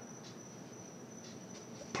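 Faint room tone: low hiss with a thin, steady high-pitched whine.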